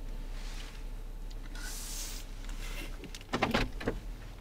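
Two brief rustling hisses, then a quick cluster of sharp clicks and knocks near the end, like something being handled inside a car's cabin.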